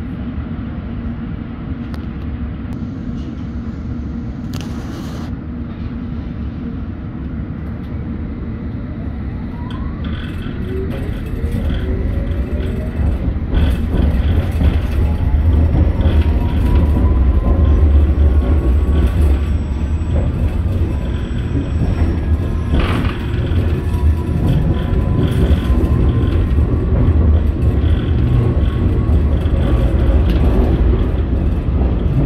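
S8 Stock Metropolitan line train heard from inside the carriage, pulling away. About ten seconds in, the traction inverter and motor whine rises in pitch as the train accelerates. The low wheel and track rumble then grows louder and stays steady.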